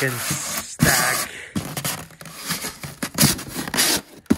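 Foil-faced foam insulation board scraping and rubbing against the walls of a polystyrene hive box as it is pushed down in as a tight fit, with a few short knocks along the way.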